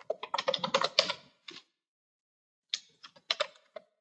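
Typing a password on a computer keyboard: a quick run of keystrokes over the first second and a half, a pause of about a second, then a few more keystrokes near the end.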